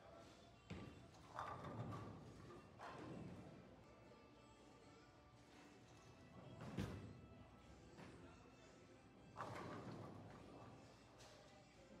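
Bowling alley sounds: pins clattering about a second in, a bowling ball thudding onto the lane about seven seconds in, and another clatter of pins a few seconds later, all fairly faint, over quiet background music.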